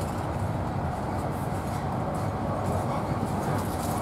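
Steady running noise of a Class 43 HST (InterCity 125) at speed, heard from inside a passenger coach: a continuous rumble and hiss of wheels on track.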